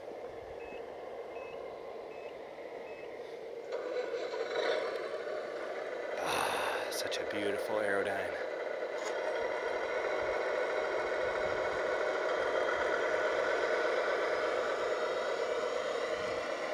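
A 1/14-scale RC semi truck's electric drive pulling a lowboy trailer loaded with a heavy RC excavator. Its motor and gears whine steadily, growing louder from about four seconds in. A few faint short beeps come in the first three seconds.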